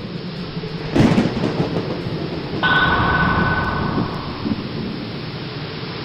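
Produced thunderstorm-style sound effect: a steady rumble and hiss like rain, with a heavy boom about a second in. A bright sustained tone swells in at about two and a half seconds and holds for over a second.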